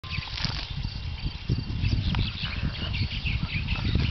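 Savanna ambience: insects and birds chirping all through, over a low, uneven rumble.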